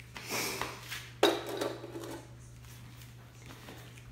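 Metal engine parts being handled and set down: a short rustling scrape, then one sharp metallic clink a little over a second in that rings briefly.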